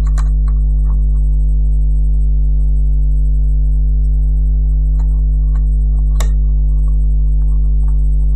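Loud, steady electrical mains hum, a low drone that never changes pitch. A few faint clicks of rubber loom bands being handled on the plastic loom pins sit over it, the clearest about six seconds in.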